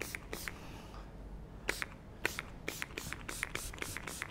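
Styling product being applied to long hair: a series of short, crisp crackles, a few at first, then after a pause of about a second a quicker, irregular run of them.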